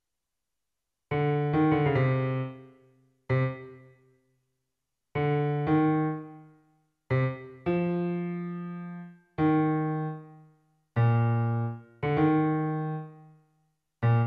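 Sampled piano from FL Studio's DirectWave sampler, sounding single notes at uneven intervals from about a second in. Each note rings out and fades over a second or two. The notes are previews, heard as each one is entered in the piano roll.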